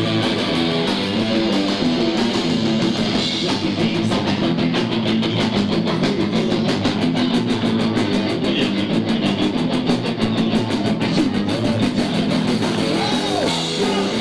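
Punk rock band playing live: distorted electric guitar and bass over a fast, even drum beat.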